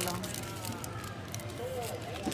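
Speech: a voice finishing a word, then quieter talk over a steady low hum, with scattered light clicks.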